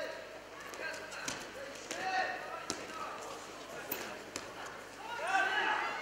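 Shouts from people in a large hall, with sharp slaps and thuds of freestyle wrestlers grappling on the mat. The shouting is loudest near the end, as the wrestlers go down to the mat.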